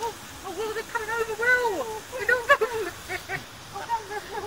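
Greylag goose calling: a quick series of short calls that rise and fall in pitch, with one longer call that slides down about a second and a half in.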